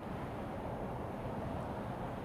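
Steady outdoor background noise picked up by an open microphone: an even low rumble with hiss, like wind and distant traffic, with no distinct events.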